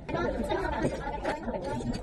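Indistinct background chatter of several people talking in a restaurant dining room.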